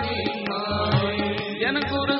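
Sikh kirtan: male voices singing a hymn line to harmonium, with tabla keeping a steady beat of low strokes.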